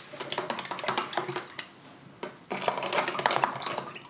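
Rapid crackling and crinkling of paper and plastic sheeting being handled on a work table, in two spells with a short pause about two seconds in.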